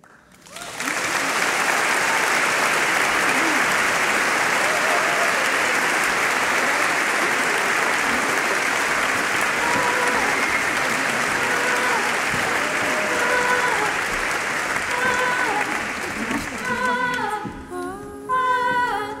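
A concert audience applauding. The clapping breaks out about a second in, stays full and steady, and eases off near the end as voices start singing.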